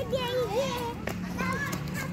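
A small child's high-pitched voice making wordless calls and babble that rise and fall in pitch.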